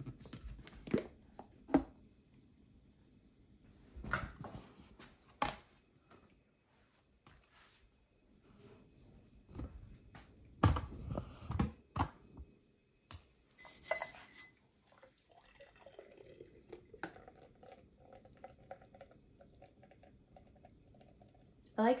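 Scattered light knocks and clicks of kitchen items being handled on a counter, then a faint steady trickle of nut milk pouring through a mesh strainer into a glass jar near the end.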